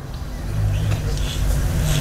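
A low rumble that grows steadily louder, with no speech over it.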